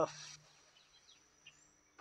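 Quiet outdoor ambience: a steady high-pitched insect drone with a few faint bird chirps, after a short breathy rustle at the start.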